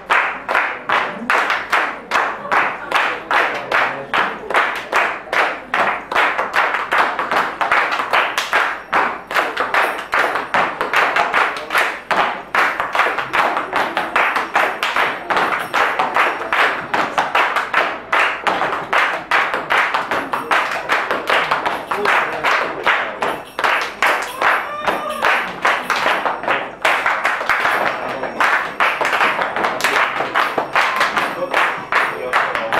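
Flamenco palmas: a group of people clapping their hands together in a steady rhythm.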